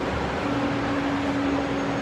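Steady background noise of vehicles at a valet stand, with a low steady hum that stands out for about a second and a half in the middle.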